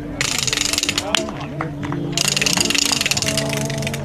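Two bursts of rapid, dense clicking rattle, like a ratchet: the first about a second long just after the start, the second about a second and a half long beginning near the middle.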